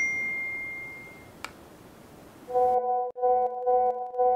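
A bright electronic ding that rings out and dies away over about a second. From about two and a half seconds in comes a steady electronic tone that pulses about one and a half times a second.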